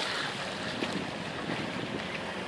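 Steady wind noise on the microphone over the wash of river water.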